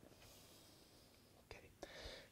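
Near silence: room tone, with a softly spoken word near the end.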